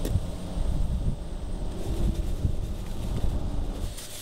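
Wind buffeting an outdoor microphone: an irregular, gusty low rumble.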